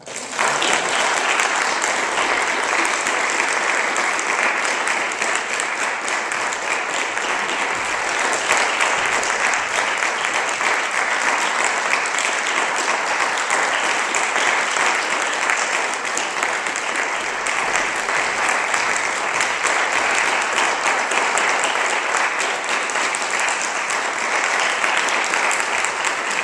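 Audience applause, a dense, even clapping that breaks out suddenly as the guitar's last note dies away and then holds at a steady level.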